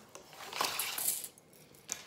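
Wired ribbon rustling as it is pulled off its plastic spool, with the spool shifting on a granite countertop, then a single short tap near the end.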